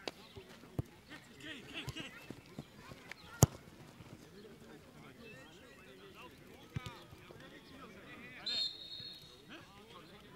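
Football match ambience: players' distant shouts and calls, with sharp ball kicks. The loudest kick comes about three and a half seconds in, and a few fainter ones fall around it. A short high, steady tone sounds near the end.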